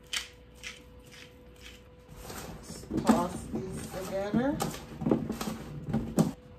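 Hand pepper mill grinding in about four short strokes, followed by a voice from about two seconds in.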